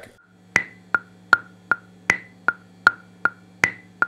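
A recording click track played on its own: a steady metronome click at about two and a half clicks a second, with a higher-pitched accented click on every fourth beat marking the bar.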